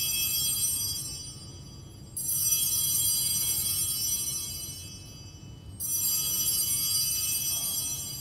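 Altar bells rung at the elevation of the chalice during the consecration. A ring is dying away, then two more rings come about two and six seconds in, each a bright shimmer of several small bells that fades out.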